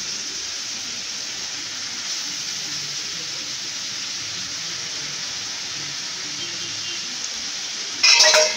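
Steady sizzling of shredded carrot and onion frying in oil in a pan.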